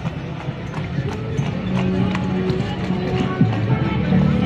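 Hoofbeats of a horse pulling a carriage, clip-clopping on brick paving, under background music with a steady pitched line.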